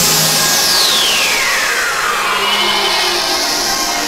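Synthesizer effect from an ARP synthesizer: a loud hiss with a whistle that glides steadily down from very high to mid pitch over about two and a half seconds, as the bass of the music drops away.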